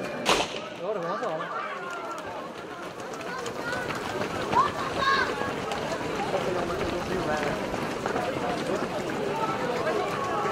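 A single sharp crack about a third of a second in, the starting shot of a running race, followed by a crowd of people talking as the runners set off.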